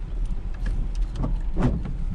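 A car's running noise heard from inside the cabin while driving: a steady low rumble of engine and road.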